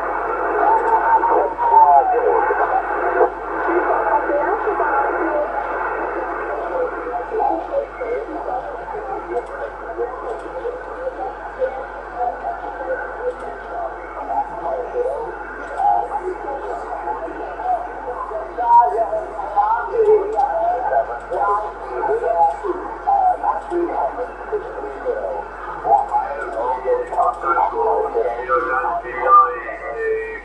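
Weak, narrow-band voices of distant stations on single-sideband, coming through a Yaesu FT-450 transceiver's speaker over steady band noise on the 11-metre band. The signals are stronger at the start and again near the end, fading in between.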